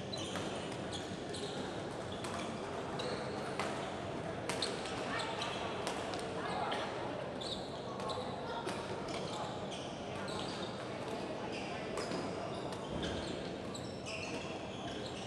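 Badminton rackets striking a shuttlecock in a fast doubles rally: a quick, irregular run of sharp cracks, with many voices in the background of a large hall.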